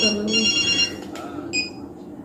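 A phone ringing: an electronic ring of several steady high tones that stops a little under a second in, followed by one short beep about a second and a half in.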